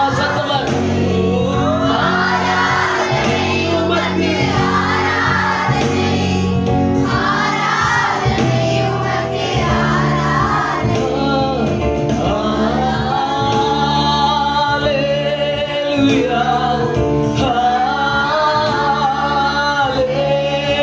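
Gospel worship song: a man sings through a microphone and PA, his voice sliding and holding long notes over a steady accompaniment of sustained chords.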